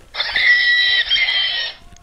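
A dinosaur cry sound effect played through a Saypen talking pen's small speaker, set off by touching the pen to a dinosaur picture in the book: one high, screechy call lasting about a second and a half.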